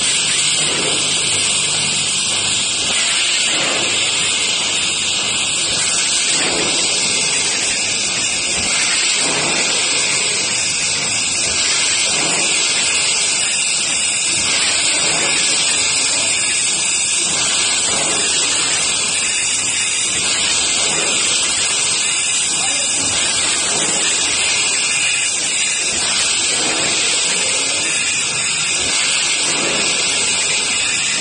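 Multi-head weigher running, with round granules rattling steadily across its vibrating stainless steel feed tray and pans, a dense rain-like hiss. Faint dull knocks come at irregular moments throughout.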